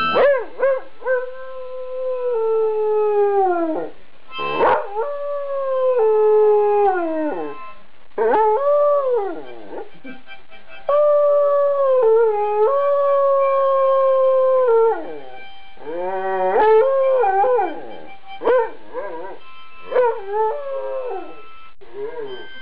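An Afghan hound howling along to a harmonica in a run of long, drawn-out notes. Most of the notes slide down in pitch at their ends, and they break into shorter howls near the end.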